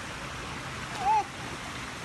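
Steady sloshing of swimming-pool water as people move through it, with one short, high-pitched vocal sound about a second in.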